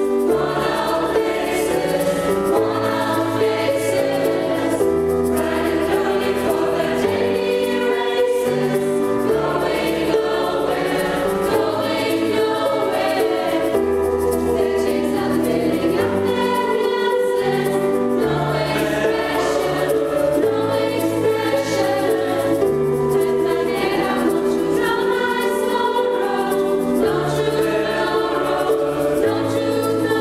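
Mixed choir of young female and male voices singing a sustained, steady choral piece with piano accompaniment.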